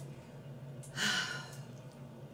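A woman's short audible breath about a second in, taken in a pause between spoken phrases.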